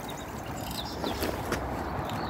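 Steady rumble of traffic from a busy main road, with a few faint bird chirps and light clicks.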